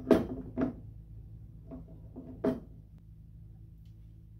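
A few short knocks and bumps of a lemon being pushed against the mouth of a glass jar that is too narrow for it, and of the fruit and jar handled on a tabletop; the sharpest knock comes about two and a half seconds in. A faint steady low hum runs underneath.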